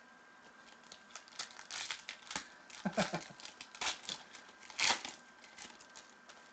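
A foil trading-card pack being handled and torn open: a run of short crinkling and tearing rustles, starting about a second and a half in, loudest around the middle and again near the end.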